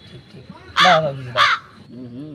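A crow cawing twice, two short loud caws about half a second apart.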